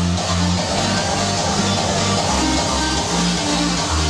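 Loud hardstyle dance music from a live DJ set, recorded at club volume: a heavy repeating bass beat under a distorted synth lead. The bass pattern blurs for a moment early on and is regular again by about halfway through.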